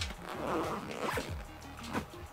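Zipper on a Vertex Gamut backpack's side pocket being pulled, one rasping run of about a second followed by a few light ticks, with background music underneath.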